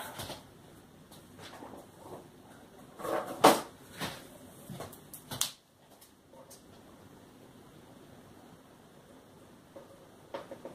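A few knocks and clatters of small painting supplies being picked up and set down on a table, loudest about three and a half seconds in, then quiet room tone for the second half.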